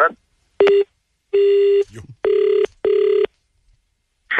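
Telephone line tones after a hang-up: a click with a short beep, a longer steady tone, then a double-ring ringback tone (two short beeps close together) as the number rings again.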